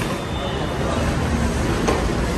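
A steady, rumbling noisy background with indistinct voices in it, and a single short knock near the end.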